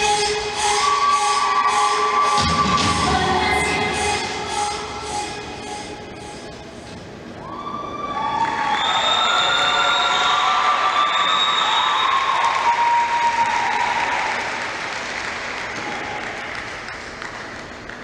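Dance music with a steady beat plays and fades out about seven seconds in; then the audience breaks into applause and loud whooping cheers, which die down near the end.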